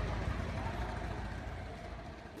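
Steady outdoor background noise, a low rumble with hiss like distant traffic, fading slowly.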